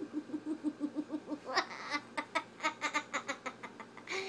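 A pug breathing hard in quick, even pulses, about six or seven a second, which turn sharper and higher-pitched about one and a half seconds in.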